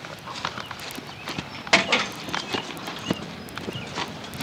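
Scattered knocks and clatter with one louder sharp knock a little under two seconds in, as a metal folding chair is handled and wrestlers move about.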